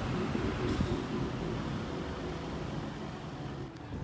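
Outdoor street ambience on a phone microphone: a low, uneven rumble with no single clear event.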